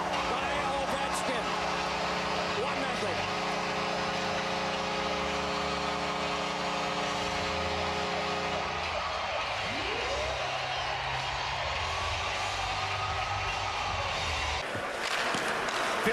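Arena goal horn sounding for a home-team goal, a steady chord of several tones held for about nine seconds over a cheering crowd, then cutting off. After it, one sound sweeps up and back down in pitch over the crowd.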